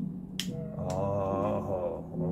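A single sharp plastic click, as the microphone's plastic battery door cover is pressed onto the body, followed by a drawn-out, wavering hum from the man handling it.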